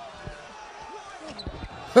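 Quiet background talk with a few dull thumps about a second in, then a man breaks into loud laughter at the very end.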